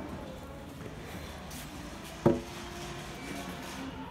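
Steady low background hum of a large store, with a single sharp knock about two seconds in as a handled lumber board bumps against the stacked boards.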